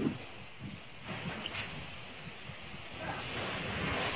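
Faint outdoor ambience with a low, irregular rumble of wind on the microphone.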